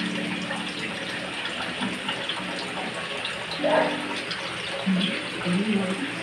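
Pot of fish broth simmering: a steady watery bubbling hiss, with brief murmurs of voices in the background.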